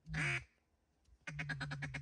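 Duck quacking: one drawn-out quack at the start, then, about a second and a quarter in, a fast run of short quacks at about ten a second, like a mallard's feed chatter.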